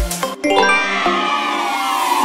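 Dance music's beat stops about half a second in and gives way to a sparkling chime sound effect, a cluster of bell-like tones sliding slowly downward in pitch.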